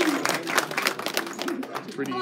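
A small group applauding by hand-clapping, the clapping thinning out and fading toward the end.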